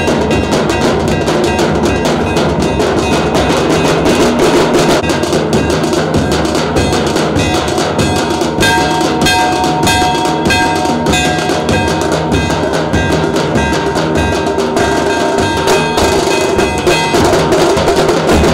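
Live wedding drumming: a large dhol and a smaller snare-type drum beaten with sticks in a fast, steady rhythm. Held tones from another instrument sound over the drums around the middle.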